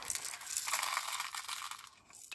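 Small plastic nail-art gems sliding and rattling as they are poured from a plastic tray into a small plastic bag: a dense, continuous run of tiny clicks that thins out near the end.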